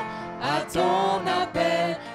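Several voices singing a hymn through microphones, holding long notes. The singing comes back in about half a second in, after a short breath pause.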